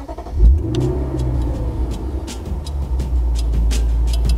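Lexus GS F's 5.0-litre V8 starting: it fires with a loud burst about half a second in, its revs flare briefly and then settle into a steady idle.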